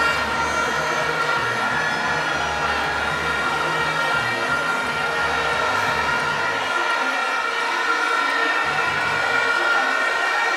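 Loud sustained horns blaring on steady, unchanging notes, layered over a low throbbing rumble that drops away about seven seconds in.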